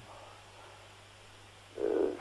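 A pause in the talk with only a faint steady low hum and hiss, then a man's hesitant 'euh' near the end.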